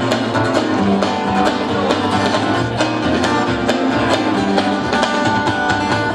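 Live band playing an instrumental passage with no singing: strummed acoustic guitars over electric bass and a steady drum beat, in a country-rock style.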